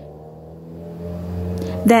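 Steady engine drone of a passing motor vehicle, growing louder through the pause, until speech resumes near the end.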